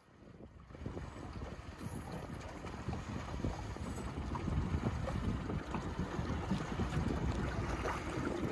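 Wind buffeting the microphone along with water splashing and slapping, jumping up in level about a second in and staying loud.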